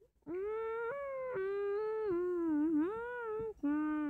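A child's voice singing wordlessly: one long drawn-out phrase whose pitch steps up and down, then a short lower note near the end.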